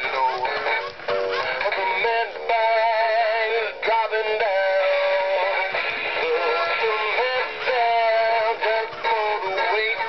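Gemmy animatronic singing Jaws shark playing a recorded song with a male singing voice through its small built-in speaker. The sound is thin and tinny, with no bass.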